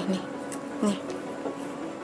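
A woman's voice twice saying a short "nih", near the start and about a second in, over a steady low humming drone of background music.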